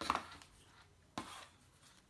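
Cardboard packaging being handled: a short scrape as the white Apple Watch box sleeve comes free of its tray, then a second brief scrape or tap a little over a second later as the cardboard is moved and set down.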